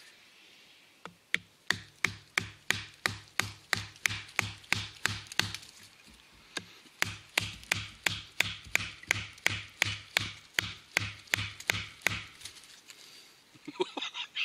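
A wooden stick batoning an HX Outdoors AK-47 fixed-blade knife through a bone-dry, very hard dead larch branch about 40 mm thick. It makes even, sharp knocks, about three a second, with a short pause midway, each blow driving the blade a little deeper.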